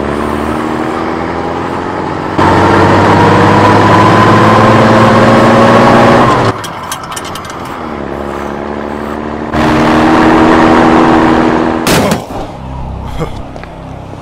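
Jeep engine sound effect: running, then loud and slowly climbing in pitch as it accelerates for about four seconds, dropping back, then loud again for a couple of seconds. A single sharp bang comes near the end.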